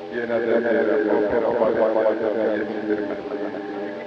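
Live wedding music: a voice with a wavering, ornamented pitch over steady sustained accompaniment.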